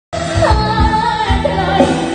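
Live band playing a Khmer pop song: a woman singing into a microphone over electric guitars, keyboard and drum kit, with a kick drum thumping through. The music cuts in abruptly at the very start.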